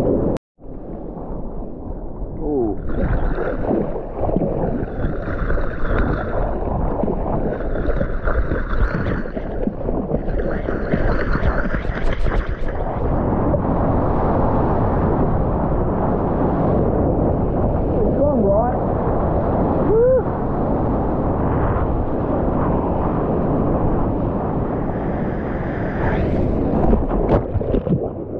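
Rushing water and wind buffeting a waterproof action-camera microphone while surfing a wave on a longboard: a continuous loud wash of splashing whitewater, with short gurgling pitch glides near the end as the camera dips through the water.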